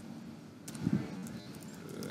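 Computer keyboard typing in faint, scattered clicks. A brief low-pitched sound about a second in is the loudest thing heard.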